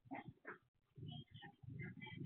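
A dog making two faint, short sounds close together near the start, over a low background murmur.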